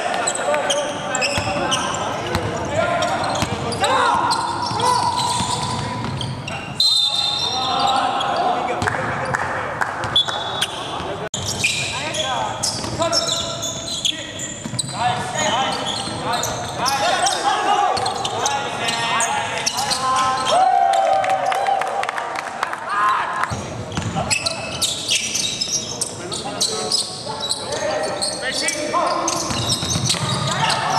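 Live court sound of a basketball game in a large hall: the ball bouncing on the hardwood, sneakers squeaking, and players calling out to each other.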